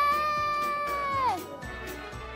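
Small dog whining: one long high-pitched whine that holds steady, then drops in pitch and fades out about a second and a half in. Background music with a light beat plays under it.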